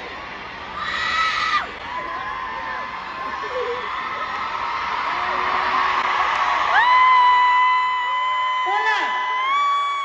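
Large stadium concert crowd cheering and screaming between songs, with a short shriek about a second in and a long, held high-pitched scream near the end.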